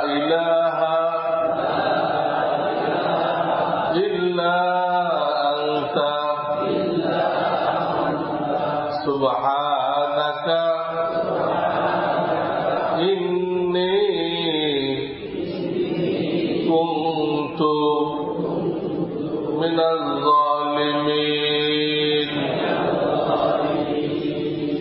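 A man's voice chanting melodically in long, held phrases that glide in pitch, with short breaths between them.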